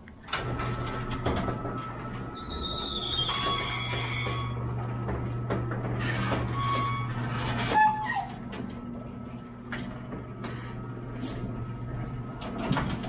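Electric sliding-gate motor running with a steady low hum as the gate rolls along its track, with rattles, clicks and a brief squeal about three seconds in. The hum drops in level about eight seconds in.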